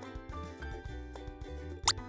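Upbeat background music with a steady bass line. Near the end, a short, loud pop sound effect that sweeps quickly upward in pitch.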